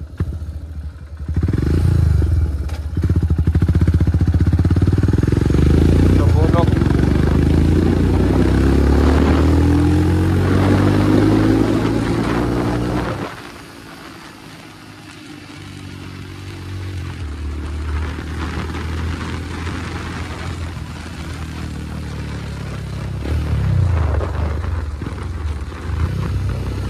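Motorcycle engine running and revving, its pitch climbing steadily for several seconds. The revs drop away sharply about thirteen seconds in, and the engine then settles to a lower, steadier run.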